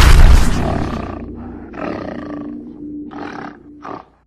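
Intro logo sting: a loud, deep animal roar sound effect over music, fading over the first second or so. It is followed by three shorter hits over a held low tone and cuts off abruptly at the end.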